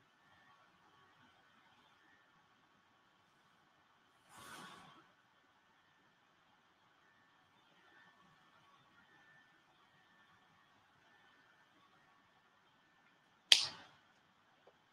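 Quiet room tone with a faint steady hum. A brief soft rustle comes about four and a half seconds in, and a single sharp click near the end as a brush marker is handled.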